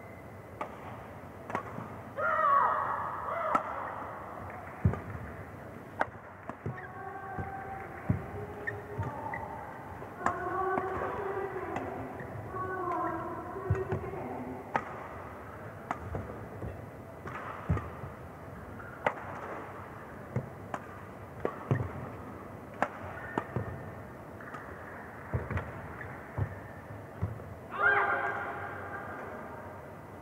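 Badminton rally: rackets striking the shuttlecock with sharp cracks, one every second or so, over a long exchange, with shoe squeaks on the court. A player's loud shout near the end marks the winning point.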